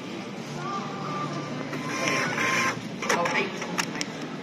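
Receipt printer of a Diebold Nixdorf BEETLE iSCAN self-checkout printing and feeding out a paper receipt. It starts with a low steady hum, becomes louder and rasping about two seconds in, and a few sharp clicks come near the end.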